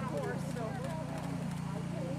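Indistinct chatter of several people talking over one another, with a steady low hum underneath. A few faint ticks in the first second may be hoofbeats.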